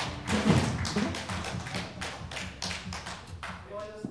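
Irregular taps and thumps as the band's music stops, with a low sliding sound about half a second in; a voice begins near the end.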